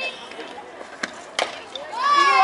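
A softball pitch reaching home plate: one sharp crack of the ball striking bat or glove about one and a half seconds in, with a fainter click a moment before it.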